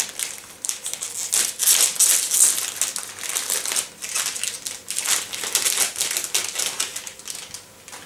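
Candy wrapper crinkling and crackling in irregular handfuls as it is unwrapped by hand, quieting briefly near the end.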